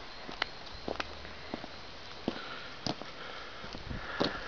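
Soft footsteps on stone paving while walking with a handheld camera, a few light ticks about every half second to a second, over faint steady background noise.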